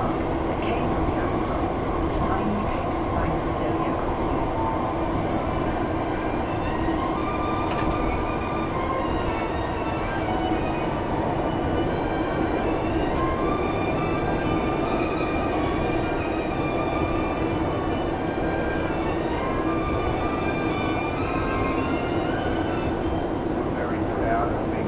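Heathrow Express Class 332 electric train heard from inside, running at speed through the tunnel. It makes a steady rumble with a constant hum.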